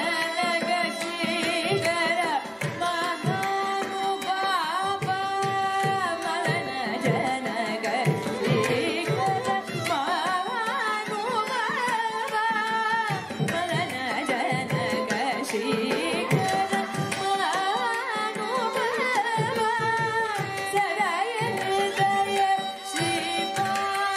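Carnatic vocal music: a woman sings a devotional kriti with ornamented, gliding phrases, shadowed by two violins, over mridangam and ghatam strokes keeping the tala.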